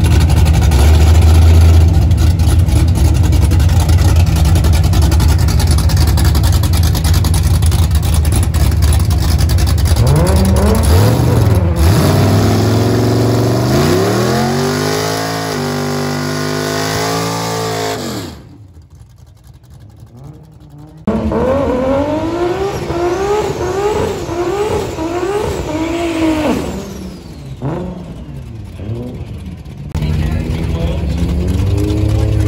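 Drag-racing Fox-body Mustang's engine running loud and steady at the start line, then revving up and down in long swells. After a sudden cut about two-thirds of the way through, a car accelerating hard, its pitch climbing and dropping back again and again as it shifts through the gears, fading near the end.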